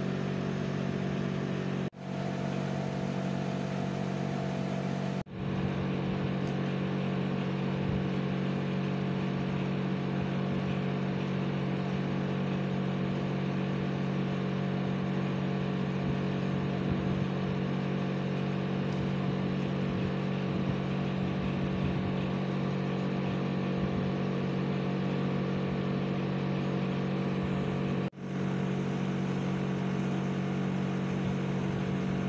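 A steady low hum, like a motor running, with several steady tones above it. It drops out briefly and fades back in three times: about 2 s in, about 5 s in, and near the end.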